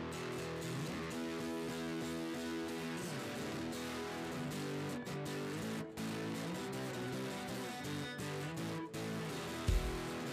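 Acoustic-electric guitar played solo with no voice, chords ringing and changing about once a second. Near the end, deep thumps join in.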